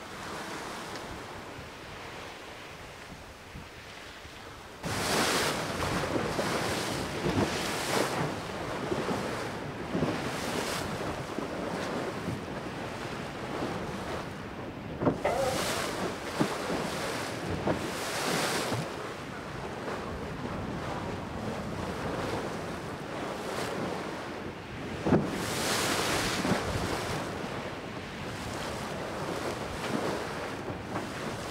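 Sea water rushing around a racing sailboat's hull, with wind on the microphone, swelling and easing in repeated surges every couple of seconds. It gets suddenly louder about five seconds in.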